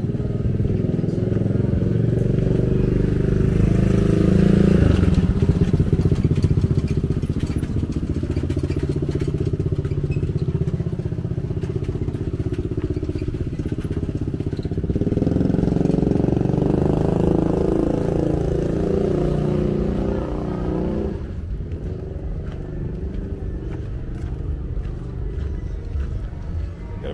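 Motorbike engines in street traffic passing close by, swelling twice: about four seconds in, and again from about fifteen to twenty seconds in.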